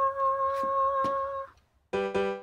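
A person's voice holding one long, high sung note with a slight waver, which stops about a second and a half in.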